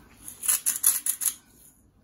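Hand-held salt grinder being twisted: a quick run of about seven crunching, clicking grinds lasting about a second, stopping just past halfway.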